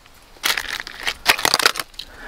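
Thick ice-storm ice crunching and cracking, a run of sharp irregular crunches starting about half a second in.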